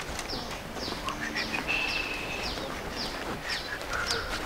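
A bird calling with a steady series of short notes, each falling in pitch, repeated about every half second.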